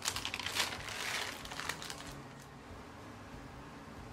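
Clear plastic wrap crinkling as it is handled and peeled off a baked cookie layer, a run of crackly rustles over the first two seconds that then dies away.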